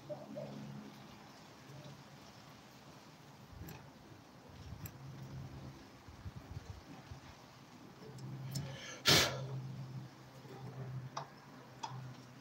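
Faint scattered clicks and scratches of a thin metal pick scraping debris out of the slots between an armature's copper commutator bars, with one short, louder noise about nine seconds in.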